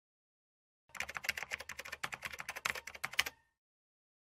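Keyboard typing: a fast run of key clicks, about a dozen a second, starting about a second in and stopping about two and a half seconds later.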